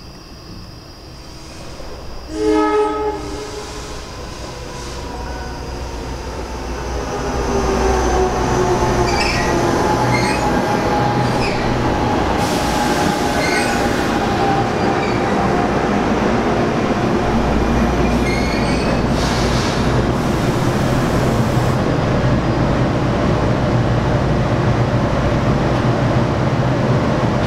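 NJ Transit Arrow electric multiple-unit train giving one short horn blast, then running into the station with a falling whine as it slows, high wheel squeals and bursts of air hiss. Once stopped it settles into a steady loud running noise.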